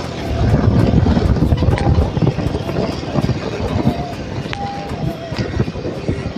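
Wind rumbling on the microphone of a moving motorcycle, in uneven gusts.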